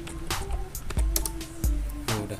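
Computer keyboard typing, a run of quick key clicks, over background music with steady low beats and a held tone.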